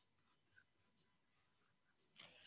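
Near silence: faint room tone with one barely audible tick.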